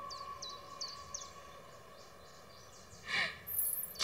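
Quiet film soundtrack ambience: a handful of faint, short, high chirps in the first second or so over a faint held tone, then a short breathy swish about three seconds in.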